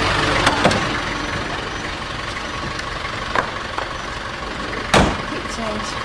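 London black cab's engine running as the taxi pulls up to the kerb, with a few light clicks and a sharper knock about five seconds in.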